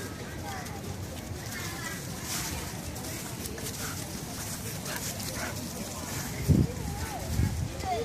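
Dogs play-fighting on leashes, with two short low barks about a second apart near the end.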